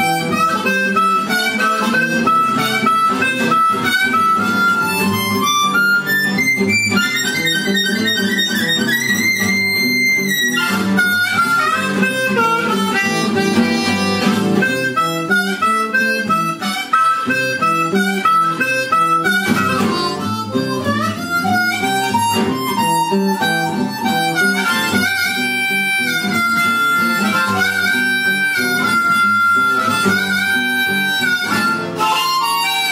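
Blues harmonica, cupped in the hands, playing a boogie with acoustic guitar. The harp holds long high notes and slides up in pitch in places over the guitar's steady rhythm.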